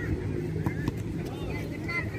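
Distant shouting voices around a youth football match over a steady low rumble, with a couple of sharp knocks in the first second.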